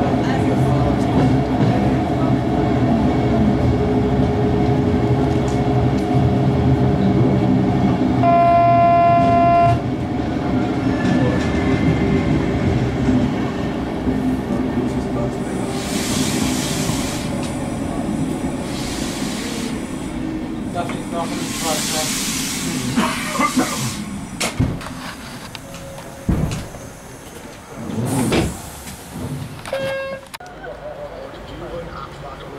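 Locomotive-hauled passenger train heard from inside an N-Wagen coach as it pulls out: a steady electric hum with a short horn blast of about a second and a half around eight seconds in, then rolling noise with several bursts of hiss in the second half.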